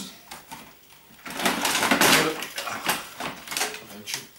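Plastic toy RC car chassis being handled and picked out of a pile: rustling and clattering, loudest in a burst a little over a second in, with a few light clicks after.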